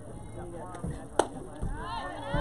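A single sharp knock of a softball bat meeting the ball on a bunt, about a second in. Voices call out right after.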